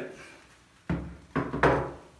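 Air rifle being laid down on a tabletop: three knocks about a second in, each trailing off briefly.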